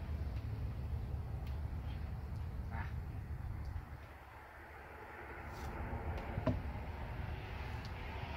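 Steady low background rumble, dipping briefly about halfway through, with a few faint clicks; no shot is fired.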